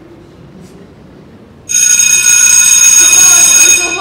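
School bell ringing: a loud, steady electric ring that starts suddenly a little under two seconds in and stops just before the end, signalling the end of class.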